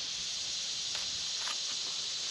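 Steady high-pitched outdoor hiss, with a few faint soft ticks a second or so in from a flat cardboard package being handled and cut open.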